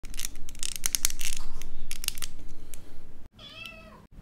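Stiff plastic model-kit parts being pressed and worked by hand: a quick, irregular run of plastic clicks and creaks, from leg parts that fit very tightly. After a sudden cut to silence about three seconds in, a cat meows once, briefly, the call falling in pitch at the end.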